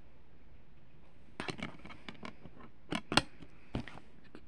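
A plastic DVD case and disc being handled: several small clicks and taps start about a second and a half in, the sharpest near the end as the disc is pressed back onto the case's centre hub.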